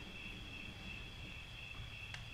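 Faint, steady high-pitched trilling of crickets at two pitches over low background noise.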